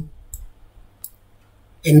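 Two faint, short computer-mouse clicks about two-thirds of a second apart, made while writing in a drawing program, with speech breaking off at the start and starting again near the end.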